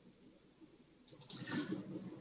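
Near silence, then in the last part a faint, brief breathy noise: a man drawing breath just before he speaks.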